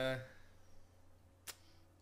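A man's brief "uh", then quiet room tone broken by one sharp click about one and a half seconds in.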